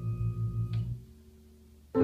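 Yamaha CP-70 electric grand piano playing: a low held note with a pulsing tone fades about a second in, a soft steady tone lingers, and a new chord is struck right at the end.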